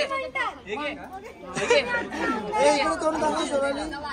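Several people chattering and talking over one another.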